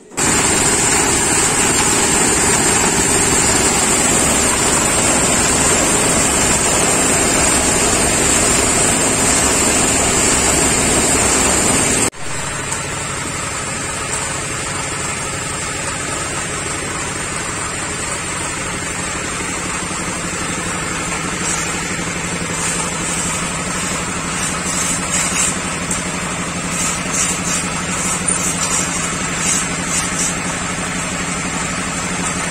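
A motor running steadily. It is louder for the first twelve seconds, then changes suddenly to a slightly quieter, steady running sound with a low hum, with light scrapes and taps near the end.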